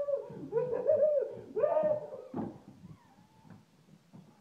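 A man laughing in high-pitched, squealing bursts, three of them, dying away about two and a half seconds in, followed by faint handling noise.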